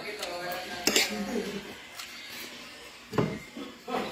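Spoon clinking against a plate while eating, with sharp clinks about a second in and a heavier knock near the end.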